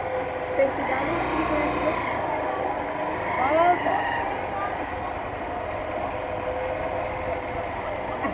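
Small motorcycle's engine running steadily at low speed while riding, with road and wind noise on the helmet microphone.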